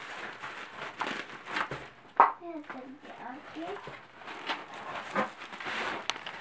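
Corrugated cardboard and plastic wrapping rustling and crinkling as a wrapped package is pulled out of a torn parcel box, with one sharp, louder crackle about two seconds in.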